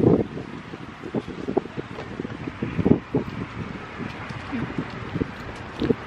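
Wind buffeting the microphone: an uneven low rumble broken by scattered short knocks and brief muffled vocal sounds.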